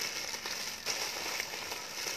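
Rustling of clothing being handled and rummaged from a pile, a steady crinkly rustle with many small crackles.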